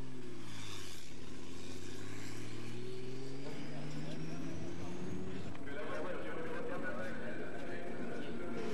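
Racing car engines on the track, their pitch dropping and then climbing steadily as they accelerate, with a high whine rising alongside. About five and a half seconds in this gives way abruptly to a busier mix of background sound.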